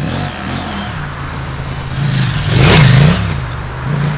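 Husqvarna Norden 901 motorcycle's 889 cc twin-cylinder engine revving as the bike rides past on a gravel track. The engine note rises and falls with the throttle and is loudest about two and a half to three seconds in.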